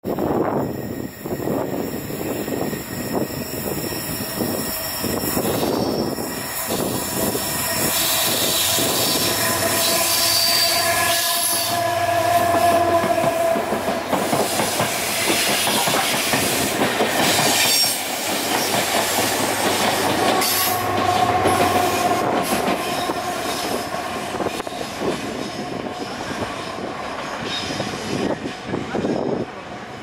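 A Colas Rail Class 70 diesel locomotive and Network Rail test-train coaches passing close by, loudest through the middle. The wheels clatter over rail joints, with a low diesel engine note and a few brief spells of wheel squeal.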